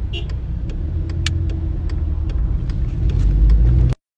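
Car cabin noise from a moving car: low engine and road rumble with a steady hum, growing louder near the end, with a few light knocks of the phone being handled. It cuts off suddenly just before the end.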